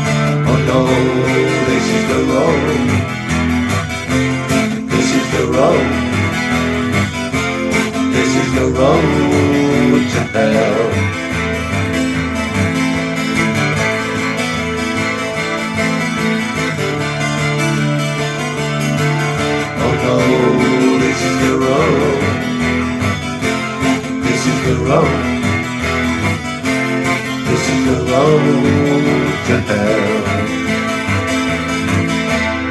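Takamine acoustic-electric guitar strummed in steady chords through an instrumental passage, with a melodic line that bends and glides in pitch every few seconds.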